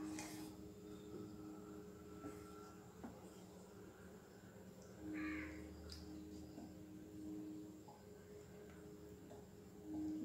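Faint stirring of milk and corn flour with a wooden spatula in a metal pan, with a few light scrapes and taps against the pan over a low steady hum. A short harsh call, like a crow's caw, sounds faintly about five seconds in.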